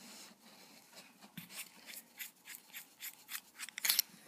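Handling noise from plastic fountain pens being picked up and moved over a cloth-covered table: a run of small clicks and rubs that grow busier, with the loudest near the end.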